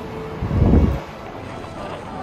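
A low buffeting rumble on the phone's microphone, lasting about half a second and starting about half a second in, over a steady background hiss in an open lobby.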